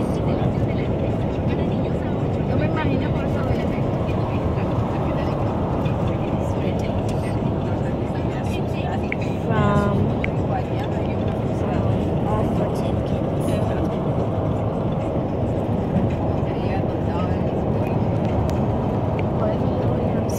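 Steady road and engine noise of a moving car, heard from inside the cabin, with a brief voice about halfway through.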